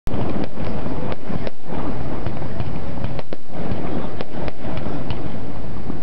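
Fireworks going off: a loud, continuous crackling with sharp cracks and bangs about twice a second.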